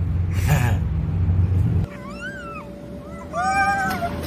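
A low rumble, typical of a child sliding down a plastic tube slide, cuts off after about two seconds. It is followed by two high-pitched, meow-like cries that rise and fall in pitch, over a faint steady tone.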